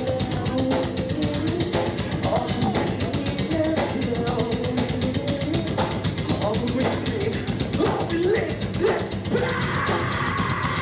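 Live rock band playing a song, the drum kit keeping a fast, even beat under a melody line that slides up and down in pitch.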